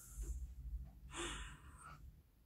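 Soft breathing from a woman, a couple of faint breaths with the longer one in the second half.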